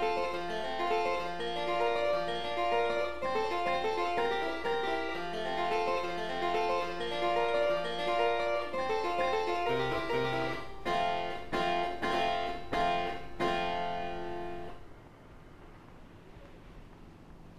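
Title music played on a keyboard instrument: a long run of quick, bright notes, then a handful of separate struck chords. The music stops a little over a second before the end, leaving only a faint background hiss.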